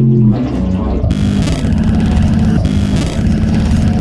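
Doom/sludge metal instrumental: heavy bass notes changing pitch. About a second in, drums and a dense wash of distorted noise come in under them.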